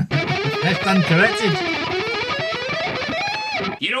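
Three-string electric guitar played through an amp, sounding a run of chords.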